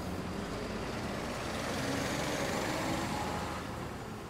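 Isuzu Gala tour coach driving past, its engine and road noise steady, growing a little louder and then fading as it pulls away.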